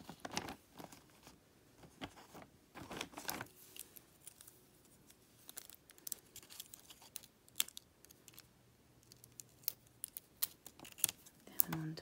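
Close handling of a sheet of plastic gem stickers: a crinkle of the sheet as gems are peeled off, near the start and again about three seconds in, then many small sharp clicks and taps of fingernails pressing the gems onto a wooden lolly stick.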